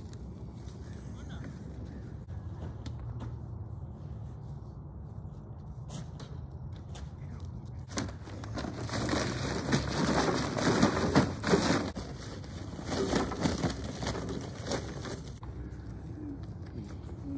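Charcoal briquettes poured from a bag onto a steel park grill: a dense run of clattering, loudest a little past the middle, over a steady low outdoor rumble.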